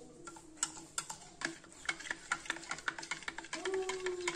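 Metal spoon stirring milk in a glass tumbler, clinking against the glass in quick, irregular ticks that come faster in the second half.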